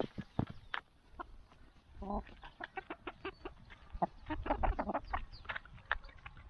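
Hens, Buff Orpingtons among them, clucking softly while they peck grain from a feeder trough, with quick irregular pecking clicks throughout. Short clucks come about two seconds in and again in a cluster a little past the middle.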